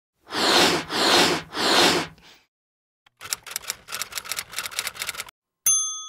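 Sound-effect title sequence: three whooshes in quick succession, then typewriter keys clacking rapidly for about two seconds. It ends on a single bell ding near the end.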